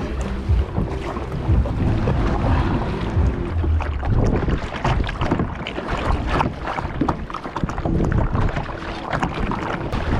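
Wind buffeting the microphone over small waves breaking on a sandy shore, with short irregular crackles and knocks. A low steady hum sits underneath for the first few seconds and again near the end.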